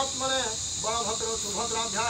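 A voice chanting in a wavering, sing-song tone, devotional chanting at a Hindu ritual, with a short break about half a second in. Behind it runs a steady high-pitched insect drone.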